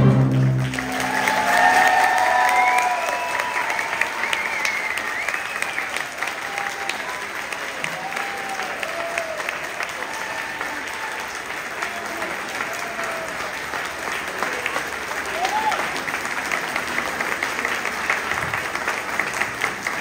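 A student concert band's last held chord cuts off in the first second, and audience applause follows, with cheering and whoops over the clapping, loudest in the first few seconds.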